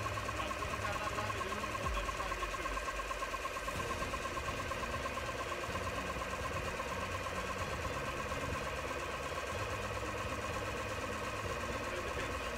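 3D-printed six-cylinder radial air compressor running steadily with a fast, even pulsing hum, pumping a soda-bottle air tank from about 10 bar up towards its bursting pressure.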